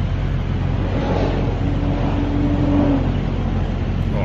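Road traffic: a steady low rumble of vehicles, with one vehicle's engine note rising out of it and holding for about two seconds in the middle before falling away.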